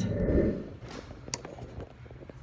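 A dull low thump of movement at the start, then a single sharp click a little past halfway, over faint room noise.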